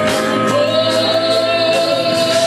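Live gospel worship music with singing, a long note held from about half a second in.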